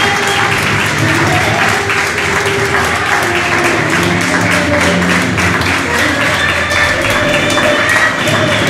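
A crowd clapping, with music and voices mixed in.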